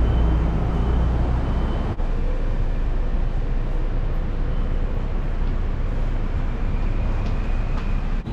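City street traffic noise: a heavy vehicle's low engine rumble for about the first two seconds, cutting off suddenly, then steady traffic and street noise.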